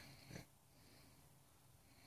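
A man's faint breathing as he dozes off, with a short snort-like burst of breath just after the start.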